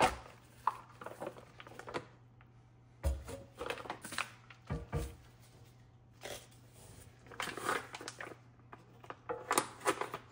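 Plastic vacuum packaging rustling and crinkling as raw racks of pork ribs are pulled out and handled with gloved hands. There are a couple of dull thumps about three and five seconds in as the meat is set down on the sink's wire grid.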